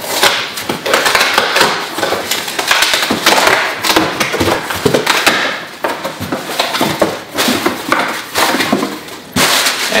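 Packing tape being ripped off a cardboard shipping box and the flaps pulled open, giving repeated noisy tearing and scraping with sharp crackles.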